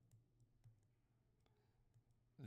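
Near silence with a few faint clicks from a stylus tapping a tablet screen while words are handwritten, over a faint steady hum.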